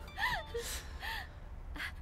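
A woman's short, breathy, high-pitched gasps of surprise, two brief cries with gliding pitch, the first just after the start and the second about a second in.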